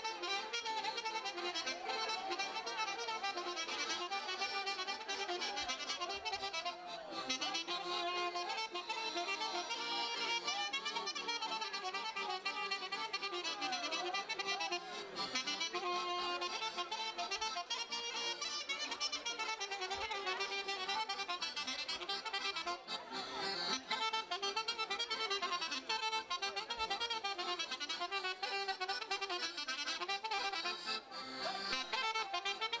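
Traditional Romanian folk dance music with accordion prominent, a continuous melody with many sliding, curving notes.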